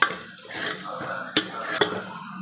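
Steel spoon scraping and knocking against a metal pot while stirring masala paste frying in oil, with a light sizzle. Three sharp clinks of the spoon on the pot: one at the start and two close together near the end.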